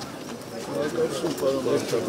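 Several people talking at once in a close crowd, overlapping voices with no single clear speaker.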